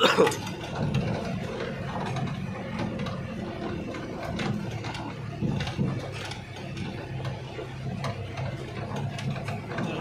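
Engine drone and rattling cab of a small truck driving along a rough plantation lane, heard from inside the cab, with many irregular clicks and knocks over a steady low engine sound.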